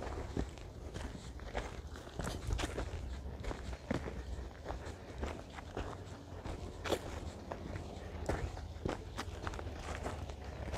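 Unhurried footsteps on grass and dry earth, an uneven pace of soft steps over a steady low rumble.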